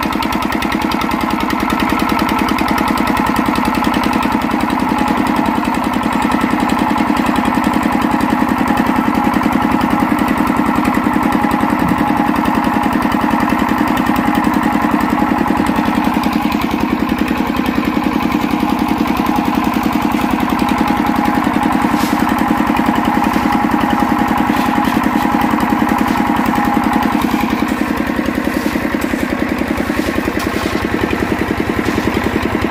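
Small stationary engine driving a drum concrete mixer, running loudly at a constant speed with a rapid, even beat.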